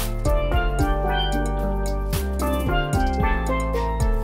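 Steel pans, a double tenor pan and a single tenor lead pan, playing a bright melody and chords of quick, ringing struck notes. Underneath run a low bass line and a regular drum beat.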